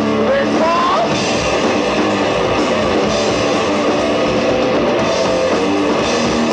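Live rock band playing, led by an electric guitar, with a note rising in pitch about a second in.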